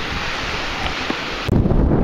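Small surf washing onto a sandy shore, with wind. About one and a half seconds in it changes suddenly to a louder, deeper rumble of wind buffeting the microphone.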